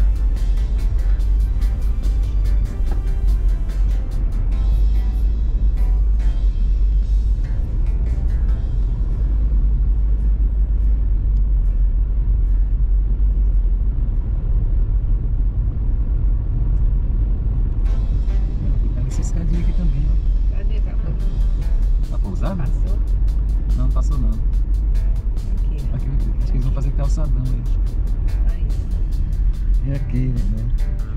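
Steady low rumble of a car driving, heard from inside the cabin, with music playing over it throughout.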